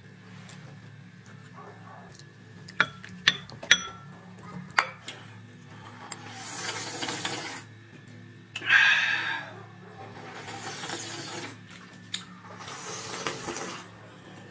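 Spoons and chopsticks clink a few times against porcelain soup bowls, then soup is slurped from the bowls in four slurps of about a second each. The loudest slurp comes about nine seconds in.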